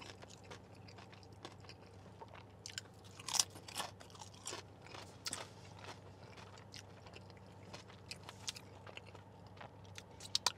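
Close-up mouth sounds of tortilla chips being chewed: scattered faint crunches, with a louder run of crunching about three seconds in.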